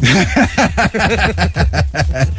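Men's voices in lively conversation, the talk going on without a pause.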